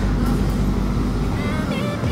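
A loud, low, unsteady rumble with faint voices in the background: canteen room noise picked up by a phone microphone as it is carried through the hall.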